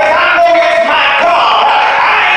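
A man singing a gospel solo loudly into a handheld microphone through the church sound system, holding and bending long notes.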